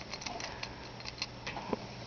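Light, irregular clicking and scratching of a kitten's claws catching on couch upholstery and a plastic pet carrier as it climbs, with one soft knock near the end.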